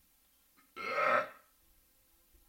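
A person burping once, a short belch just under a second in.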